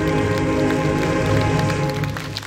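Instrumental close of a pop song's recorded backing track over a concert PA: sustained chords over a steady bass, with no singing, that stop right at the end.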